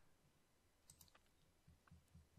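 Near silence with a few faint computer-mouse clicks, a pair about a second in and another pair near the end.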